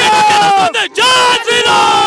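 A crowd of men shouting a slogan, one voice loudest, in two long drawn-out shouts.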